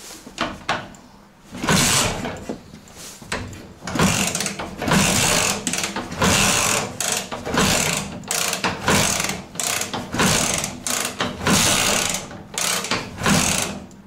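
Dnepr MT-16 flat-twin engine being kick-started again and again. There are about seven kicks, each turning the engine over in a short mechanical burst, and it does not catch and run.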